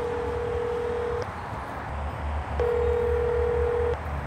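Telephone ringback tone on an outgoing call, heard through a phone's speaker: a steady mid-pitched tone rings twice, each ring about a second and a half to two seconds long with a short pause between, while the call waits to be answered.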